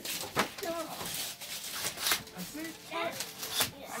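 Indistinct voices of several people talking, with a few brief sharp clicks or rustles.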